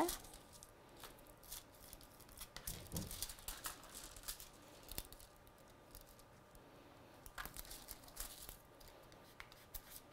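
Faint crinkling of a sheet of gold craft foil as it is pressed onto glued card and lifted off again, heard as scattered short crackles.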